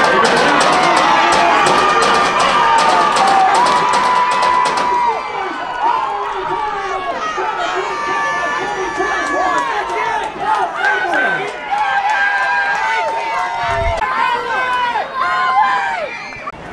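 Football spectators cheering and shouting, many voices at once, with rapid clapping through the first five seconds.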